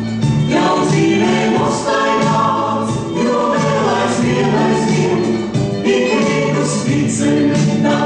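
A choir singing a Latvian folk-style song over instrumental music, which runs without a break.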